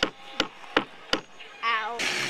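Hammer driving a nail into a wooden plank: four even, sharp strikes, about three a second.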